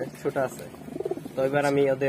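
Giribaz pigeons cooing, with a longer coo in the second half.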